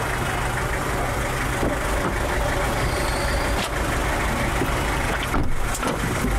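Steady hum of a car's engine heard from inside the cabin.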